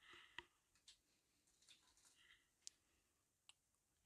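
Near silence with a few faint, scattered clicks: a brass photoetch part and metal flush cutters being handled.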